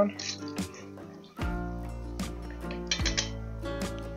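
Background guitar music with light clicks and taps of a wooden spatula against a cast-iron skillet as garlic is stirred in hot oil.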